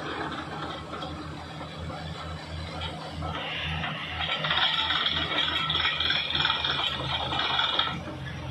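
Truck-mounted borewell drilling rig at work, its engine running with a steady low pulsing drone while it drills with compressed air. About three seconds in, a louder hiss joins in over the engine.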